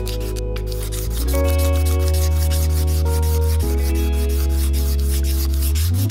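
Background music with held chords that change twice, over the scraping of a razor blade held flat on a bare wooden guitar body, taking off the last of the stripped lacquer.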